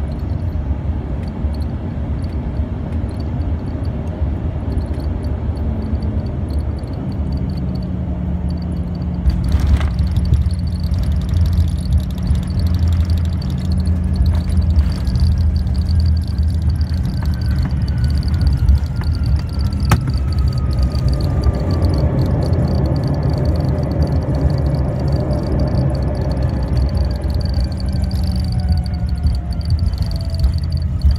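Cabin noise inside an Embraer ERJ 145 regional jet with twin rear-mounted turbofans on landing. A sharp jolt about nine and a half seconds in marks the touchdown, after which the rolling and engine noise grows louder. Through the rollout an engine whine slowly falls in pitch as the jet slows down.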